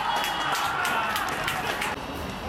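Open-air football pitch just after a goal: players shout in celebration over the outdoor noise, with a few sharp claps. The sound drops away suddenly near the end.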